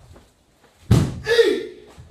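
A sharp impact about a second in, at once followed by a loud kiai shout from the karateka that falls in pitch and dies away, within a kata.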